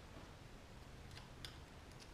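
Near silence with a few faint, short metal ticks in the second half as the shift-solenoid retaining clip on a 4L60E transmission valve body is worked loose by hand.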